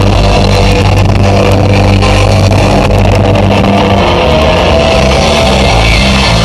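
Live heavy rock band playing loud: distorted electric guitar over bass and drums, with low notes held steady that break into shorter, choppier notes near the end.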